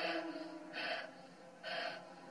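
A man breathing hard in three sharp gasping breaths, a little under a second apart.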